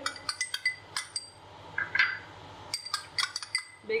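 A small glass bowl clinking against the rim of a mixing bowl as baking powder is tipped out of it into flour. There are two clusters of quick, light clinks, one in the first second and another about three seconds in.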